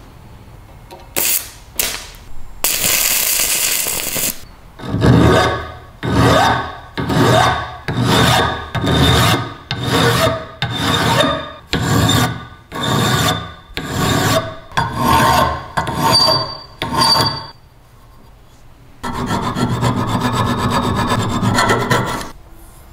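A hand file rasping back and forth over a metal slicer crank handle clamped in a bench vise: about a dozen even strokes, roughly one a second. The strokes are preceded by a brief loud burst of scraping and followed by a steadier scraping near the end.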